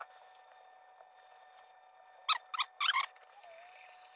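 Ripe avocado flesh squelching as it is mashed and squeezed by bare hands: a few quick, wet squishes about two and a half to three seconds in.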